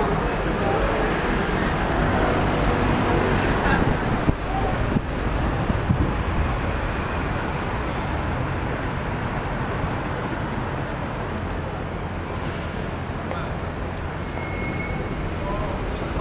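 City street ambience: steady road traffic noise with vehicles passing, and people's voices in the first few seconds.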